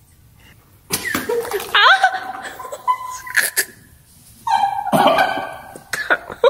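After about a second of quiet, people laughing and shrieking in loud bursts, with sharp sneeze-like and cough-like outbursts between them.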